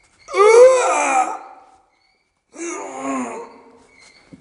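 A person's voice giving two drawn-out, wavering wailing cries with no words, each about a second long; the second, starting about two and a half seconds in, is quieter.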